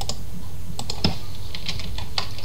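Computer keyboard keystrokes: a handful of irregular key taps, typing a short command, over a steady low background hum.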